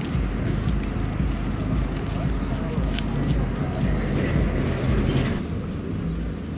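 Boat engine running steadily at low revs: a continuous low rumble.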